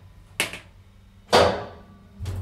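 Two sharp knocks about a second apart on a hydraulic elevator's door, the second a louder clank that rings briefly: the door being shut and latched.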